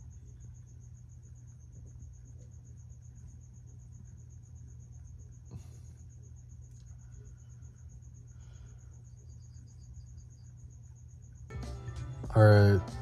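A faint, steady, high-pitched trill pulsing evenly like an insect's, over a low steady hum, with a brief soft rustle about halfway.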